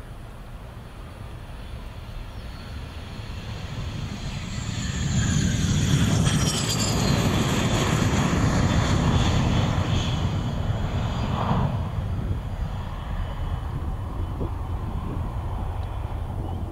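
Chengdu F-7 fighter jet's turbojet passing close on landing: the noise builds, is loudest for several seconds with a high whine falling in pitch, then eases off to a steadier, lower sound.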